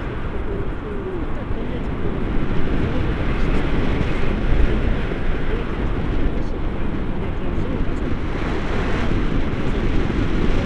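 Wind rushing and buffeting over the camera microphone during a tandem paraglider flight, a steady loud rumble.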